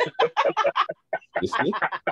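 A person laughing hard in quick, cackling bursts, about seven a second, with a short catch of breath about halfway through.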